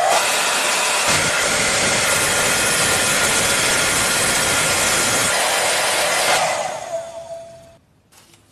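Handheld hair dryer blowing steadily at full power, then switched off about six and a half seconds in, the rush fading over the next second with a brief whine as the fan winds down.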